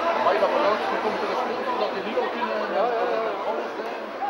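Several people talking at once close by, overlapping chatter of spectators in the stands.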